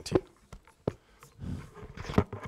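Handling noise at the lectern: a few sharp clicks and knocks with a short low rumble in the middle, as the laptop and microphone are handled between talks.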